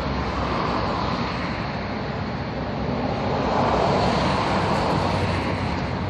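Steady outdoor traffic noise that swells a little in the middle.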